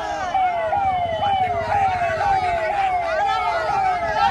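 Police vehicle siren sounding a repeating falling tone, a little over two sweeps a second, each one dropping in pitch and then snapping back up.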